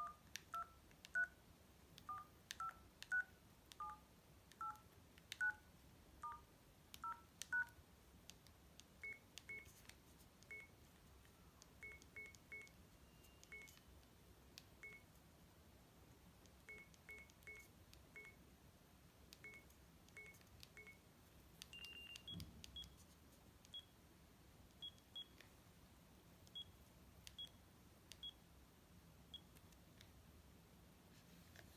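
Sagem myC2-3 mobile phone keypad tones. First comes a quick run of short two-note dialling beeps, one for each key pressed. Then come single higher beeps spaced out as buttons are pressed, a slightly longer tone with a soft knock about two-thirds through, and sparser, even higher beeps after it.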